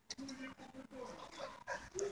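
Black-and-white puppies giving a few short, quiet whimpers and squeaks while playing around an adult dog.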